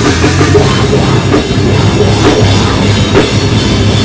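A heavy rock band playing loud and live, with bass guitar, guitars and a pounding drum kit with cymbals.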